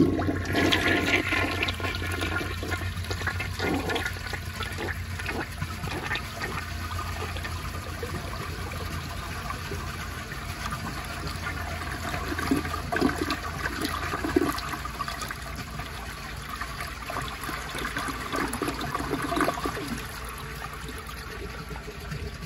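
1955 Eljer Duplex toilet flushing with its tank overfilled: the water rushes in suddenly, then runs on in a really long flush, swirling and gurgling down through the siphon-jet bowl.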